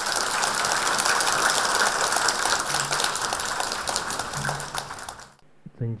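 A large audience applauding warmly, a dense clatter of many hands clapping. It cuts off abruptly about five seconds in.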